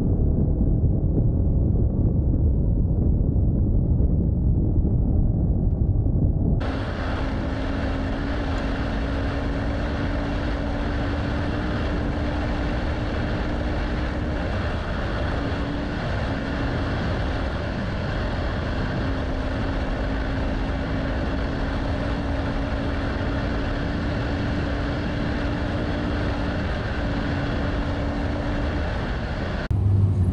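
Adventure motorcycle riding on a dirt road, its engine running under wind and road noise. About seven seconds in, the sound changes suddenly from a dull low rumble to a brighter rushing noise with a steady engine hum.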